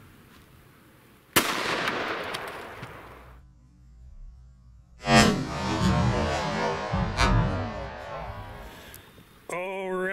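A single 10mm Auto hardcast round fired from a Springfield XD-M pistol about a second and a half in, the report ringing off over about two seconds. About five seconds in a second loud report starts, drawn out and mixed with music.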